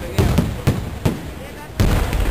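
Aerial fireworks display: a quick series of shell bursts, about five sharp bangs in two seconds, the loudest near the end.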